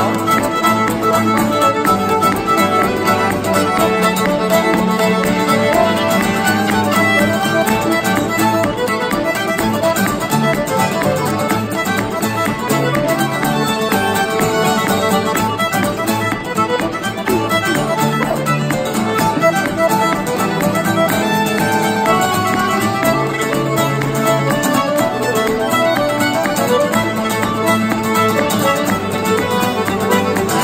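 Fiddle, piano accordion and acoustic guitar playing a contra dance tune together, the fiddle carrying the melody over accordion and guitar accompaniment, continuous and steady in level.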